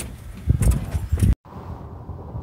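Wind and handling noise on a handheld microphone, in uneven low rushes, cut off abruptly a little over a second in; a fainter low rumble follows.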